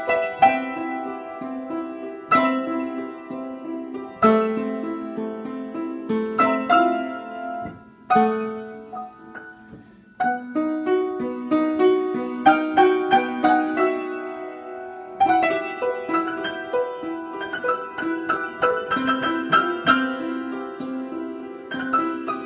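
Upright piano played with both hands, phrases of notes and chords, fading to a brief lull just before ten seconds in before the next phrase starts.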